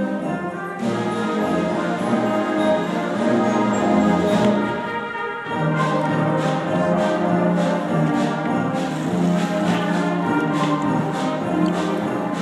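Junior high concert band of brass and woodwinds playing a piece with sustained chords. From about halfway through, a steady beat of strikes comes roughly twice a second.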